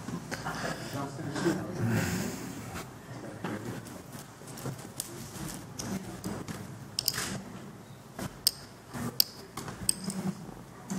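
Low, indistinct voices of people talking quietly among themselves in a hall, clearest in the first few seconds, with several short sharp clicks in the second half.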